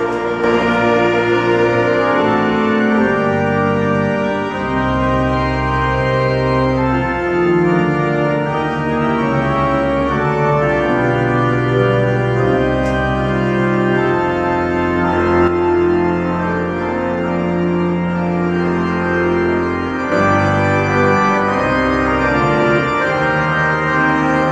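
Organ playing a hymn in slow, held chords that change every second or two.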